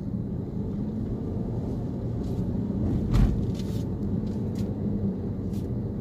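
A vehicle driving along the road, with a steady engine and road rumble and a brief louder bump about three seconds in.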